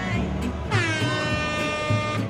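An air horn sound effect blares once for about a second and a half, starting about halfway in with a brief downward slide into a steady note, signalling the start of the challenge. Background music with a steady beat plays underneath.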